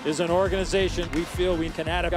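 Speech: a voice talking throughout.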